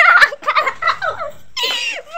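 A toddler's high-pitched vocal cries: several short squeals and whines that bend up and down in pitch, with a louder, sharper cry near the end.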